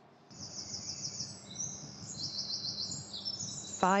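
Dawn chorus of several songbirds, with rapid high trilling phrases overlapping one another from just after the start, over a faint low background rumble.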